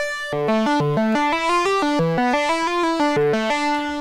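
Synthesizer notes from a factory instrument in the Drambo app on an iPad, played on the on-screen pads: one note held briefly, then a quick run of notes about four a second, stepping up and down in pitch.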